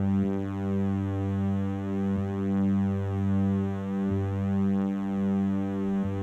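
Electronic keyboard holding a low sustained drone chord that swells and fades about once a second.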